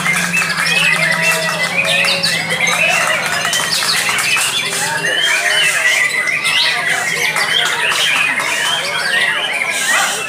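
Many caged songbirds singing at once in a songbird contest, a dense overlapping chorus of whistles, trills and chattering calls. A white-rumped shama is among them. A low steady hum runs underneath and fades out about halfway through.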